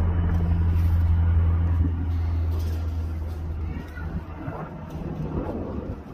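UH-60 Black Hawk helicopter flying overhead, its rotors giving a steady low drone that is loud for about two seconds and then fades away as the helicopter flies off.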